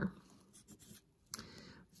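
Pencil writing a numeral on paper: faint scratching in two short runs of strokes.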